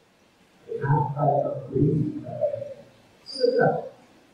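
A man's voice over a microphone speaking in short, drawn-out phrases with pauses between them. The voice comes in about a second in, after a brief lull.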